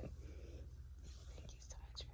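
Quiet pause between spoken lines: a faint steady low hum with a soft whisper.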